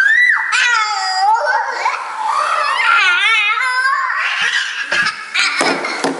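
A young child crying in high, wavering wails. Near the end come a few thumps as the girl slides down the wooden stairs to the floor.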